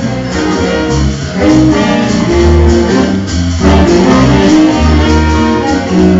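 Live jazz big band playing, a saxophone playing over a bass line that moves about every half second.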